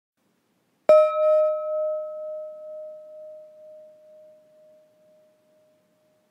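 A meditation gong struck once about a second in. It rings out in a clear tone that fades with a slow, pulsing waver over about four seconds. The strike marks one minute of the timed silent sitting.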